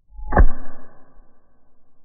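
Opened thermal-magnetic circuit breaker tripping by hand. The armature of its electromagnet is pushed down, releasing the catch, and the spring-loaded moving contact snaps open with one sharp click about half a second in. A metallic ring follows and fades within about a second.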